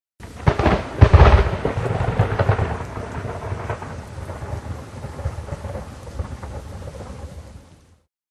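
Thunderstorm sound effect: a sharp thunderclap about a second in, then a rolling rumble over steady rain hiss that slowly dies away and fades out near the end.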